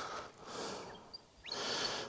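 Faint outdoor ambience: a low hiss with two soft rushes of noise, and a couple of tiny high chirps near the end.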